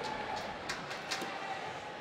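Ice rink arena ambience: a steady crowd murmur, with a few faint sharp clicks about a second in.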